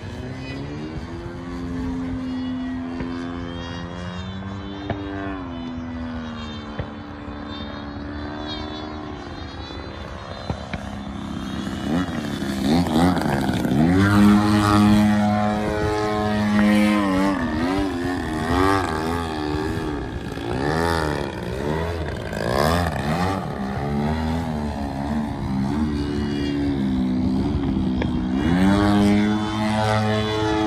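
Large radio-controlled aerobatic airplane flying overhead, its propeller drone rising and falling in pitch as the throttle is worked through manoeuvres. It grows louder about twelve seconds in as the plane comes nearer.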